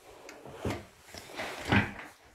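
Rustling and two soft thumps close to a phone's microphone, the second the louder, from clothing and an arm moving against or near the phone.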